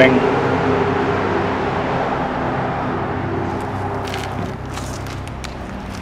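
Steady low hum of a motor vehicle's engine, slowly fading away, with a few faint scuffs about four seconds in.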